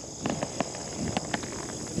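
Steady, high-pitched chorus of insects chirping in a grassy pasture, with a few faint short clicks and crunches over it.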